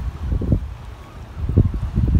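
Wind buffeting the phone's microphone on a windy riverside: a low rumble that swells in two gusts, one about half a second in and a stronger one near the end.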